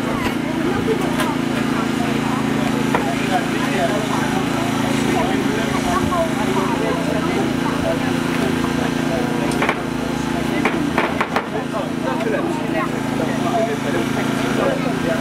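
An engine running steadily at a low hum, under crowd chatter, with a few sharp clicks about ten seconds in.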